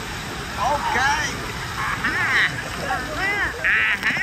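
Children's high-pitched shouts and squeals, several voices overlapping in repeated bursts over the noise of a busy pool.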